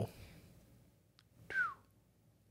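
Quiet pause broken, about one and a half seconds in, by a click and a brief whistle-like squeak that falls in pitch.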